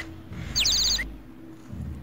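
A bird-chirp sound effect: a quick run of about five short, high, falling chirps about half a second in, over a faint low background.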